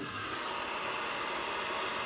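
Sovol SH03 filament dryer's PTC heater fan blowing hot air steadily while the dryer runs at its 85 °C setting.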